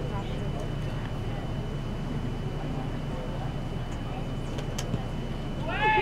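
Open-air soccer field ambience: a steady low rumble with faint, distant shouts from players, and a single sharp knock about five seconds in.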